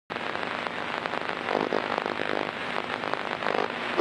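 Bed covers rustling and crackling close against a phone's microphone, a continuous scratchy noise.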